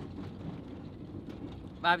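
Van cabin noise while driving: a steady low rumble of engine and road. A man starts speaking near the end.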